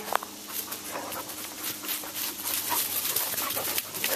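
A dog panting close by, with scattered scuffs and rustles on leafy ground and a short rising squeak right at the start.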